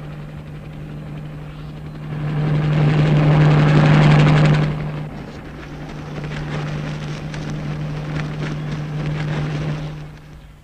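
Jet aircraft flying overhead: a steady rushing roar over a low hum, swelling to its loudest about three to four seconds in, then falling back and carrying on at a lower level.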